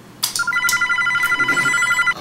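Telephone ringing with an electronic trill: a rapid, steady warbling tone that starts about a third of a second in, just after a short click.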